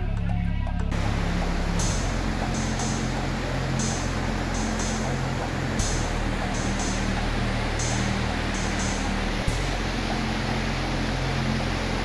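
Background music with a steady beat. About a second in, the loud, even rush of fast-flowing Bhagirathi floodwater comes in and continues under the music.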